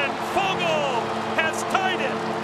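Arena goal horn sounding steadily over a cheering crowd, with whoops and whistles rising and falling above it, right after a home goal.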